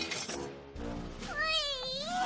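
Light cartoon background music, then, from about halfway in, a high, wavering squeal from a cartoon baby pony's voice.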